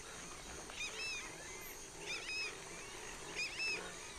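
Faint bird calls: three short, high chirping phrases about a second and a half apart over quiet outdoor ambience.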